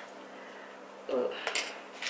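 Plastic packaging, bubble wrap around a makeup brush set, being handled and opened: a few light crinkles and clicks in the second half, with a woman's short "ooh" about a second in.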